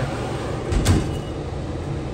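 A steady low rumble, with a single brief knock about a second in.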